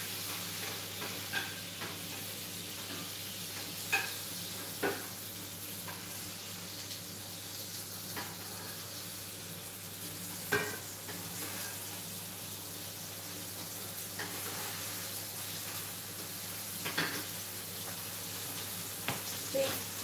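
Breaded pork schnitzel frying in hot oil in a pan, a steady sizzle, with a few sharp clinks of a utensil against the pan now and then.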